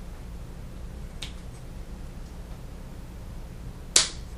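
Scissors snipping through autumn olive stems: a lighter snip about a second in and a loud, sharp snip near the end.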